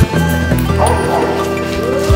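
Background music with sustained tones, with a dog barking over it.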